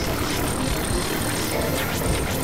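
Dense, steady synthesizer noise drone: a roaring wash of noise with no clear notes, of the kind used in industrial noise music.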